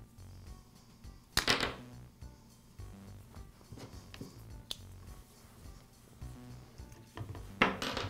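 Handling noises of a trimmer's starter rope and plastic starter handle being fitted together: one loud rustle about one and a half seconds in and a few light clicks later, over soft background music.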